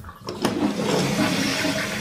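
A Japanese toilet's flush lever clicks about half a second in, then the bowl flushes with a rush of water.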